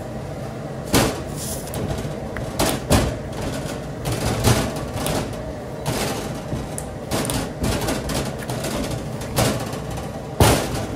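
A large mass of warm hard-candy sugar being folded and pressed by gloved hands on a metal bench, giving irregular thumps and knocks every second or two, the first about a second in. A steady hum runs underneath.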